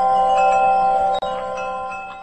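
Bright chime tones: several struck notes ringing on and overlapping, with a few new strikes, dying away toward the end.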